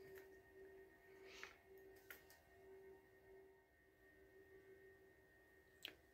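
Near silence: room tone with a faint steady hum-like tone and a couple of very faint soft ticks.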